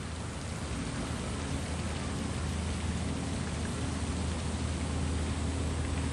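Steady splashing hiss of water fountains spraying into a pond, with a low rumble underneath.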